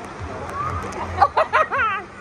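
A woman's high-pitched squealing shriek, wavering up and down in pitch and strongest in the second half, her reaction to being pushed about by the wave pool's waves.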